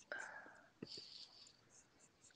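Faint breathy, whisper-like noise close to a microphone, with two soft clicks a little under a second in.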